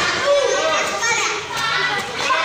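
Several children's voices calling out and chattering over one another.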